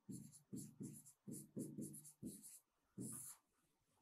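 Pen writing a word on an interactive whiteboard: a series of about a dozen short, faint strokes of the pen tip on the board's surface, with a longer stroke near the end as the word is underlined.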